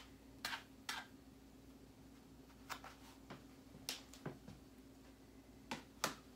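Light, scattered clicks and taps, about eight in a few seconds, of plastic food containers and a lid being handled and set down on a kitchen counter, over a faint steady hum.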